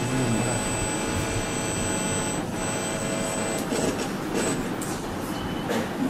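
A steady mechanical drone with a thin, high whine over it, easing off about three and a half seconds in.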